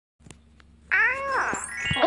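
Animated title-card sound effect: a couple of faint clicks, then a high pitched call about half a second long that drops in pitch at its end, followed by a quick rising glide.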